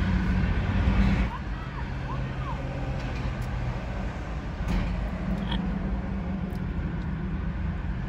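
Road traffic: cars passing on the street over a steady low engine hum, swelling for about the first second and again near the middle.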